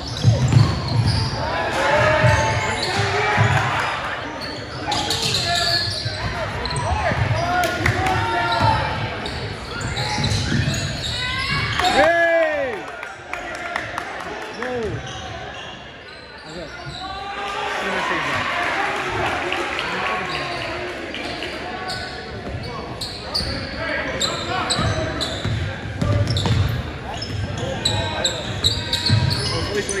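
Basketball bouncing on a hardwood gym floor during play, mixed with the voices of players and spectators, all echoing in a large gymnasium.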